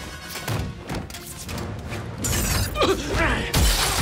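Film action soundtrack: music with impact hits and thuds, then a glass panel shattering as a body crashes through it, the breaking glass densest near the end.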